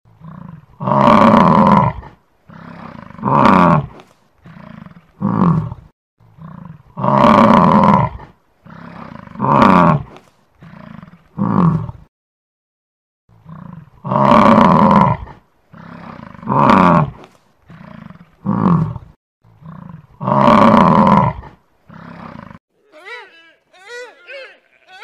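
Bison bellowing: a run of deep calls, long ones mixed with shorter ones, with the same sequence of calls repeating about halfway through.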